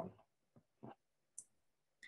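Near silence, broken by a few faint, brief clicks.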